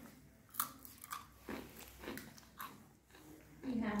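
A crisp baked cheese stick being bitten and chewed, with about five sharp crunches spread over a couple of seconds.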